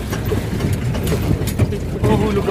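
Engine and cabin noise of a 4x4 off-road vehicle heard from inside while it drives, a steady low rumble with a few short knocks.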